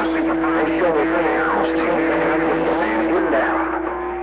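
CB radio receiving 11-metre skip: several distant stations talking over one another at once, garbled and unintelligible, with a steady low heterodyne tone under them that cuts off near the end.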